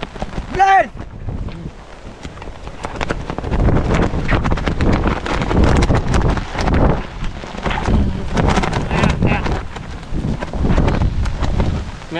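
Strong storm wind buffeting the microphone in gusts, louder from about four seconds in, with irregular rustling and clattering as a fabric kite is handled on the wet ground.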